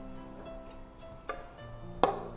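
Soft background music of slowly changing held notes, with a light tap just over a second in.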